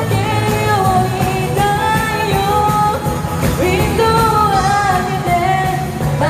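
A live pop-rock band with a lead singer playing loudly over a PA. The singer holds and slides between long notes over a steady beat.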